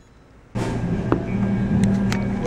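Café room noise: a steady low hum with a few sharp clicks and clatter, cutting in suddenly about half a second in after a quiet stretch.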